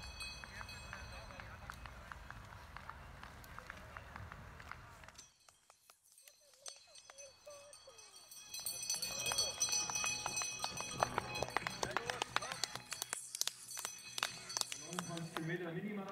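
Mountain bikes riding past close by on a grass trail: tyres on the ground with many short clicks and rattles. Spectators' voices are in the background, and the sound drops out briefly about a third of the way through.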